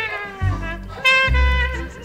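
Swing-style jazz recording: a trumpet plays the melody over plucked bass notes, with one note sliding downward at the start.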